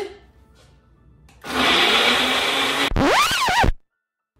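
A countertop personal blender starts about a second and a half in and runs loudly and steadily on frozen cranberries with almost no liquid. After a little over a second it is cut off by an edited sound effect of sliding tones that rise and then fall in wavering steps, which stops abruptly into silence.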